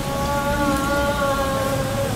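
A steady rushing noise with one held, pitched tone over it that sinks slightly in pitch for about two seconds.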